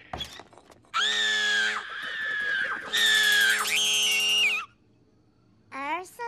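Cartoon woman's high-pitched screams, twice: a short one about a second in and a longer one from about three seconds. A steady low held note sounds under each.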